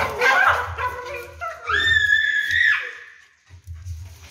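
A wet dachshund whining as its tail is pulled, with one high, drawn-out whine of about a second near the middle and shorter vocal sounds around it.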